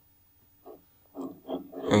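A pause in narration with near-silent room tone, then short hesitant vocal sounds from the narrator about a second in, running into the start of his next sentence near the end.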